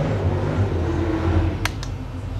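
Twin-turbocharged 383 cubic inch V8 of a VH Holden Commodore drag car running at a steady low note around its burnout. Two sharp clicks come near the end.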